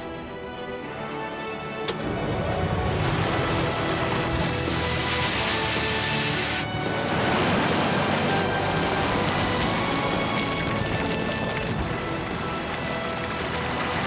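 Water rushing down the steel sluice run of a gold wash plant as it starts up: a steady wash of noise that builds about two seconds in. Background music plays throughout.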